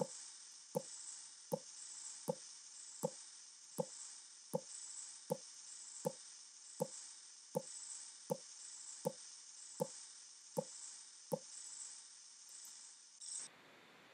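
Simulated blood-pressure cuff deflating: a faint steady hiss of air from the release valve, with soft Korotkoff thumps about every three quarters of a second that stop about 11 seconds in. The beats are heard as the cuff pressure falls from the systolic toward the diastolic value, for a reading of about 98 over 60. The hiss cuts off near the end.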